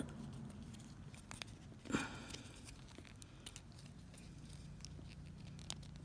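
Faint rustles and small clicks of fingers handling a paraglider line wound around a plastic pen, with one louder rustle about two seconds in, over a low steady hum.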